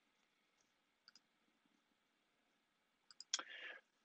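Near silence, broken by a couple of faint clicks about a second in and a sharper click near the end, followed by a brief hiss.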